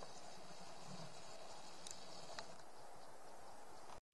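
Faint, steady pine-forest ambience, a soft even hiss with two faint short ticks about two seconds in.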